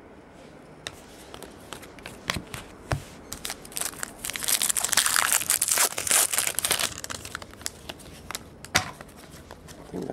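Foil wrapper of a trading-card pack crinkling as it is torn open and handled, with scattered sharp crackles at first and a dense loud crinkling from about four to seven seconds in, then sparser crackles.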